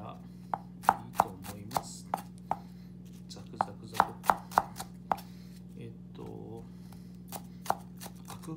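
Kitchen knife chopping fukinotou (butterbur buds) on a wooden cutting board: two quick runs of about half a dozen sharp strokes each, then a single stroke near the end. A steady low hum sits underneath.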